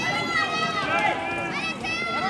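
Several high-pitched voices of race spectators shouting and calling out at once, overlapping.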